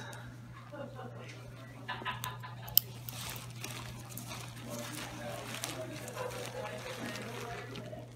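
Faint, indistinct talking over a steady low electrical hum, with a single sharp click a little under three seconds in.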